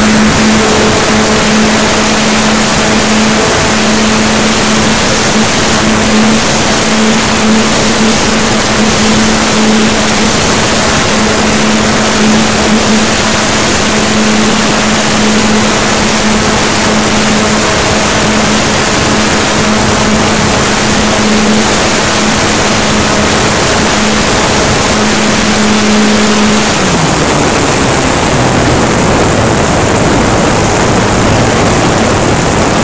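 Model airplane's motor and propeller running at a steady high pitch under loud wind rush, heard from a camera on board in flight. Near the end the pitch glides down to about half as the throttle is pulled back and the plane descends.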